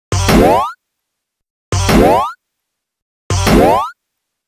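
A cartoon boing sound effect, a springy twang sweeping upward in pitch, played three times about a second and a half apart with dead silence between.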